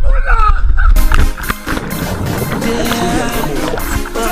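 A voice calls out over wind buffeting the action camera's microphone during a jump from a pier. About a second in, a sudden loud splash marks the plunge into the sea. Rushing underwater bubbles follow, with music underneath.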